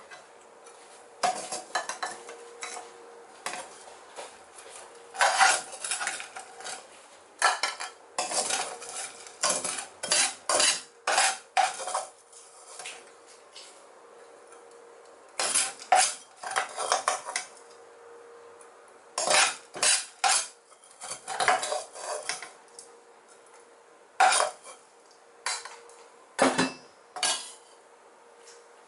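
Metal spatula and spoon scraping and knocking against a nonstick frying pan and a bowl, in irregular clusters of clatter with short pauses between them.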